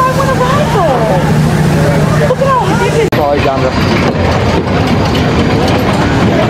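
For about three seconds, people's voices chatter over a steady low hum. After an abrupt change, a continuous rumbling follows: the Flying Turns bobsled coaster's cars rolling along their wooden trough.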